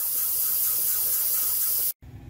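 Kitchen faucet running into a plastic bucket of sudsy cleaning water, a steady hissing stream of water filling it; it cuts off suddenly just before the end.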